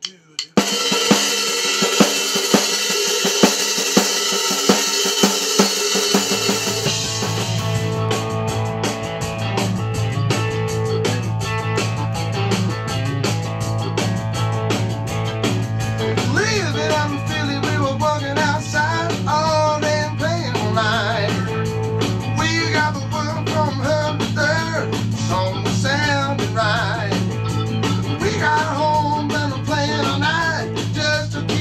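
Blues band playing a take live in the studio: drums and guitars start together after a few clicks, the bass comes in about six seconds in, and a man's lead vocal enters about sixteen seconds in.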